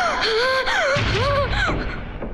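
A woman's anguished, wordless cries: several gasping wails in a row, each rising and falling in pitch.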